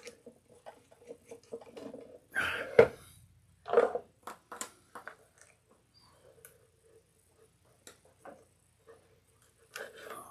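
Plastic waterproof cable connectors and cord being handled and threaded together: scattered small clicks and brief rustles, the loudest a rustle ending in a sharp click at about three seconds in, with another rustle about a second later.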